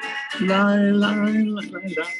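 A man singing one held note for over a second, with acoustic guitar accompaniment, in a sung prayer service.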